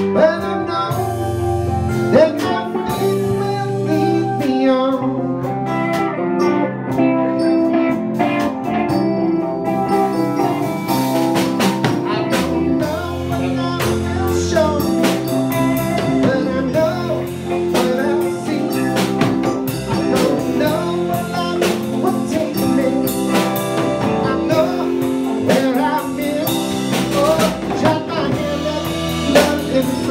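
A live band plays an instrumental stretch of a song, with guitar, bass and drum kit going steadily throughout.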